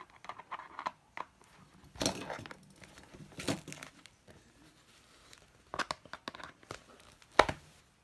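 Hands working pliers on the metal rivet posts of a faux-leather planner cover: scattered clicks and rustling of the cover, with a few sharper knocks, the loudest near the end.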